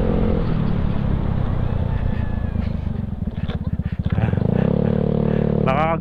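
Yamaha Mio Sporty scooter's small single-cylinder four-stroke engine running while riding. About three seconds in, the throttle eases off and the engine note breaks into separate pulses and dips, then picks up again with a slightly higher note.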